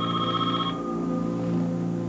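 An electronic telephone trilling in one short ring that stops within the first second, over sustained low soundtrack music chords.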